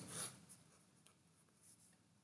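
Near silence: room tone with a few faint, brief ticks and a soft rustle.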